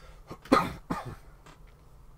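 A man coughing twice in quick succession about half a second in, the first cough louder than the second.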